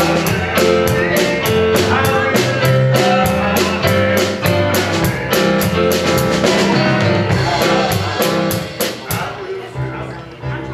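A man singing a worship song to electronic keyboard accompaniment with a steady drum beat and bass line. The music stops about nine seconds in.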